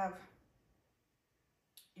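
A woman's speech trails off into a pause of near silence, broken near the end by one short, sharp click just before she starts talking again.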